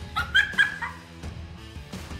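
Background guitar music, with four short, high-pitched yelps in quick succession in the first second.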